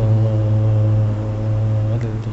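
A man's voice holding one long, steady low note in Quranic recitation (tarannum in maqam Rakbi), with barely any change in pitch.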